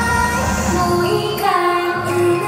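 A female idol singer singing live into a microphone over a pop backing track. About a second and a half in, the bass drops out, leaving the voice and the lighter accompaniment.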